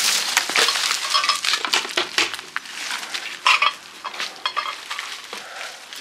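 Footsteps crunching and scuffing over litter and dry bramble stems on concrete, with rustling vines and light clinks of debris, in a string of irregular sharp crackles.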